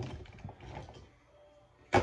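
Rummaging and handling sounds of objects being moved about, soft knocks at first, then one sharp click or knock near the end.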